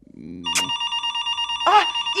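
Landline telephone ringing: a steady, rapidly trilling electric ring that starts about half a second in. A man's voice briefly overlaps it near the end.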